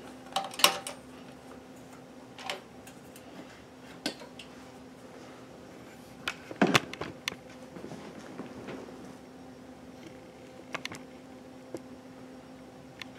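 Scattered clicks and knocks from handling fabric and parts at a Kenmore 158.1040 sewing machine, the loudest cluster about six and a half seconds in, over a steady low hum.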